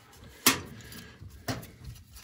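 Two sharp metallic clicks about a second apart, the first louder, as a gloved hand handles an old brass boiler valve and its fittings, with light handling noise between.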